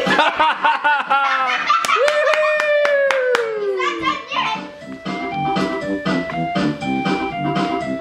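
Organ-like background music with steady held chords, over which a child sings a silly song in a wavering voice; a couple of seconds in the voice slides down in one long falling glide, with a few sharp taps. The music carries on alone after that.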